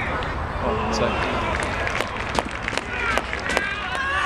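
Players and spectators shouting during open football play, with several sharp knocks from about halfway through.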